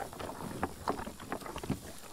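American bison crunching range cubes close to the microphone: short, irregular crunches, a few a second, as they eat the cubes off a cloth-covered table.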